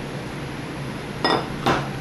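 Aluminum soft-plastic lure injection mold halves clinking together as the mold is opened: two sharp metallic knocks in the second half, the second one louder.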